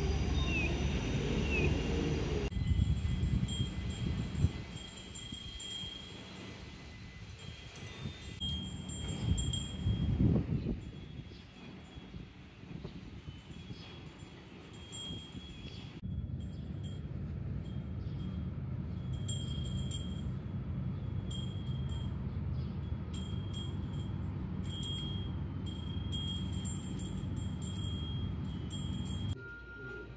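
Chimes ringing in short, clear, high tones, struck again and again at irregular intervals over a low steady background rumble.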